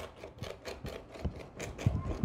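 Mezzaluna chopping through fresh marshmallow root on a cutting board: quick, light chops, about five a second.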